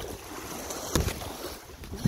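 Small lake waves washing against the shore, with wind. There is a single thump about a second in.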